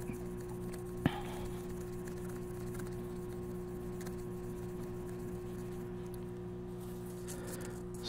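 Faint rubbing of a small polishing pad with metal polish on a brushed stainless steel pick guard, over a steady low hum, with one sharp click about a second in.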